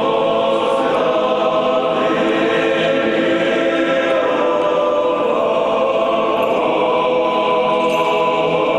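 Russian Orthodox church choir singing an unaccompanied chant of a requiem service (panikhida), in long held chords.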